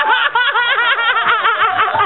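People laughing: a fast run of high, wavering laughs.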